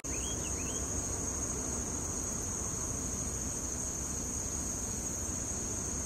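Insects trilling steadily in one continuous high-pitched drone, with two short rising chirps right at the start over a low background rumble.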